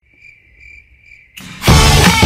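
Cricket chirping sound effect, a steady high trill with a few evenly spaced pulses, over a silent title card. Loud music cuts in about a second and a half in.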